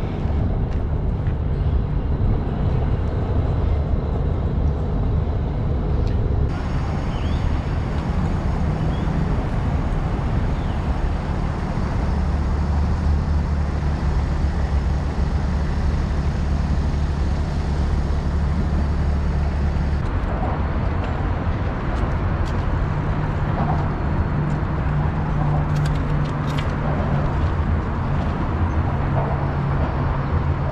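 Steady low wind rumble on a moving camera's microphone during a ride, with rolling and traffic noise mixed in. The sound changes abruptly about six seconds in and again about twenty seconds in, where the footage is cut.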